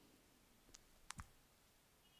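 Near silence: room tone, broken by a few faint clicks, one about three quarters of a second in and a quick pair just after a second in.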